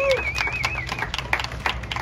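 Scattered hand clapping, with a high wavering whistle-like tone through the first second.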